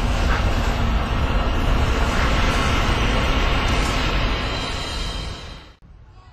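A loud, dense rumbling roar, strongest in the low end, that drops away sharply just before the end.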